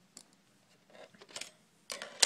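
A few small plastic clicks and taps, the loudest near the end, as the memory compartment cover is lifted off the underside of a Gateway M520 laptop.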